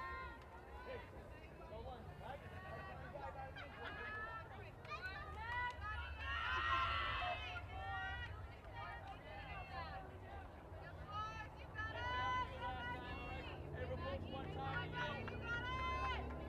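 Many high-pitched girls' voices calling and chattering from the softball dugout and field, with one louder shout about seven seconds in. A steady low rumble runs underneath.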